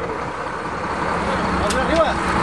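Boat engine running steadily with a low drone, under a haze of water and wind noise, with a short click near the end.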